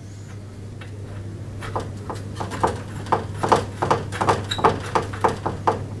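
Light, irregular clicks and taps, a few a second, from a nut being run on finger tight onto a lawnmower's front wheel axle by hand, over a steady low hum.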